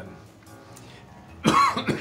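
A man coughing: one cough in two quick bursts about one and a half seconds in, after a short quiet pause.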